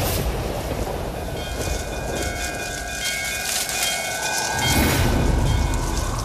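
Dramatic TV-serial background score of storm-like wind and low rumble. A sustained chord of high, horn-like tones enters about a second in and fades near the end, with a low swell just before.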